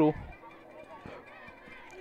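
A commentator's voice ends a phrase, then a short lull of faint outdoor ballfield background with faint distant voices.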